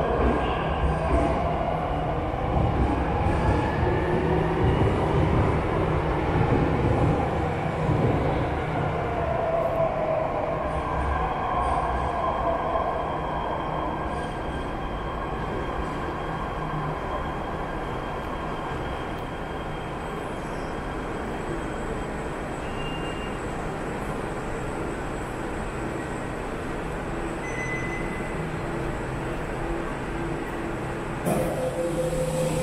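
Jakarta MRT electric train pulling into an underground station behind platform screen doors. A rumble with whines that glide up and down in pitch is loudest in the first dozen seconds, then eases to a steady, quieter hum as the train slows and stops.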